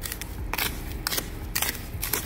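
A spoon stirring a damp mix of sand and potassium polyacrylate hydrogel in a plastic beaker: gritty scraping strokes, about three of them, roughly half a second apart.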